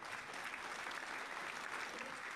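Applause, steady for about two seconds and fading out at the end.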